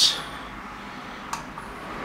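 A single short click of a light switch about a second and a half in as the garage lights are turned off, over a steady quiet room hiss.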